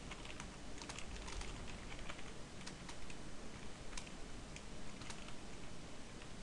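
Typing on a computer keyboard: irregular key clicks as a line of code is typed.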